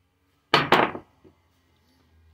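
A sudden loud knock, two quick hits close together about half a second in, then a faint tick: small metal motor parts from a dismantled nebulizer striking the workbench.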